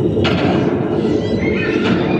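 Shooting-gallery replica rifle firing: two sharp electronic shot sounds about a second and a half apart over a steady din, with a short whistling target sound effect near the end.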